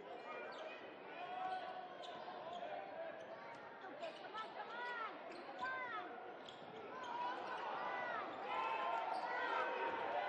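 Live college basketball play on a hardwood court: a ball dribbling and sneakers giving short squeaks on the floor, several squeaks in the middle and again near the end, over players' and spectators' voices in a large gym.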